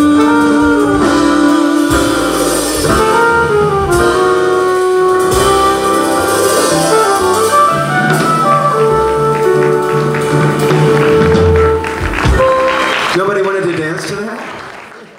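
Live jazz band playing the ending of a song: a male singer holds a long final note for the first couple of seconds, then trumpet, keyboard, upright bass and drums carry on to a closing flourish.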